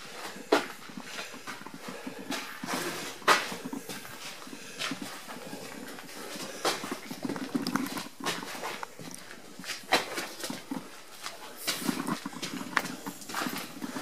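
Footsteps on a ship's deck in a narrow steel compartment, irregular knocks about once a second as someone walks slowly forward.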